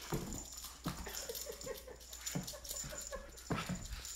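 Greyhound whimpering in excited play, a quick run of short pitched notes, with several sharp thumps as it lunges and snaps at a wand toy.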